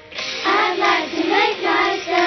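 Children's song: backing music with a singing voice coming in about half a second in.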